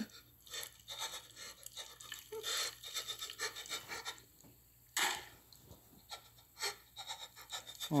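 Faint, irregular rubbing, scraping and squishing as a rubber-gloved hand works a raw turkey carcass in a cardboard box, with one sharper, louder scrape about five seconds in.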